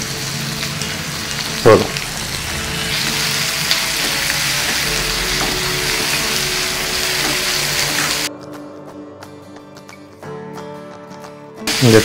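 Chopped onions and tomatoes sizzling in oil in a nonstick pan while being stirred with a wooden spatula. The sizzle cuts off suddenly about eight seconds in, leaving only faint background music.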